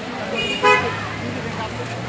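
A car horn gives one short toot just under a second in, preceded by a fainter blip, over the low running of vehicle engines and a crowd's voices.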